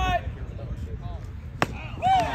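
One sharp pop about three-quarters of the way through as the pitched baseball reaches home plate on a swinging strikeout, over faint crowd voices.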